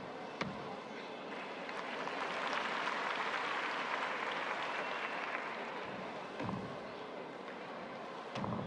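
Arena crowd noise that swells into applause through the middle, with dull thuds of a gymnast's feet landing on a balance beam, once just after the start and again later on.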